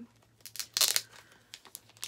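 Comic book packaging being opened by hand: a few quick crinkles and a tear, loudest a little under a second in, then small rustles.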